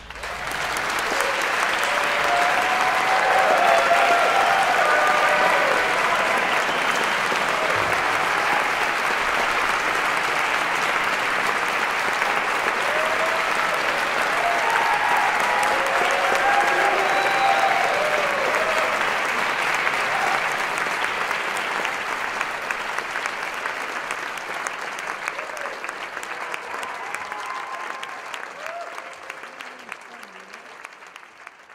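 Concert audience applauding, rising at once to a full, steady applause with scattered shouts of voices, then gradually thinning out over the last ten seconds.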